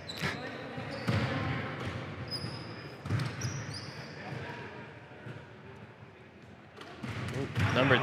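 Basketball bouncing a few times on a hardwood gym floor as the shooter dribbles before a free throw, each bounce a sharp thud with a short ring in the large gym. Low crowd murmur runs underneath.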